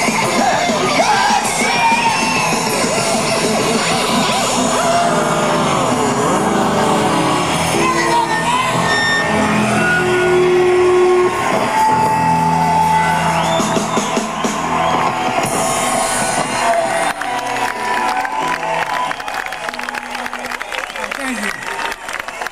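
Live rock band playing the noisy outro of the song, with guitars sliding in pitch and then held notes ringing, while the crowd shouts and whoops. In the last few seconds the music fades and the crowd noise takes over.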